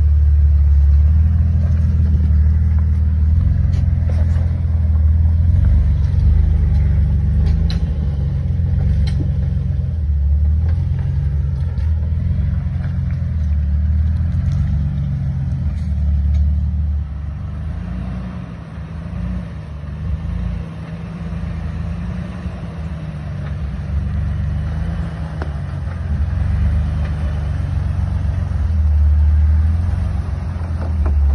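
Lifted Jeep TJ Wrangler engine running at low revs as it crawls through muddy ruts, with a deep, steady rumble. It fades somewhat past the middle and swells again near the end as a second Jeep comes close.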